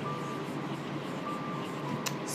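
Red marker writing on a whiteboard, giving two short, faint, thin squeaks, the first at the start and the second about a second and a half in, over a steady low hiss.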